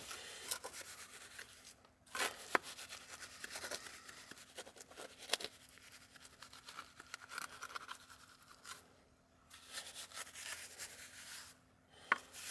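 Steel trowel scraping and smoothing wet sand mortar onto a stone pillar as it is rendered, in repeated strokes with a few sharp clicks of the blade and a short pause near the end.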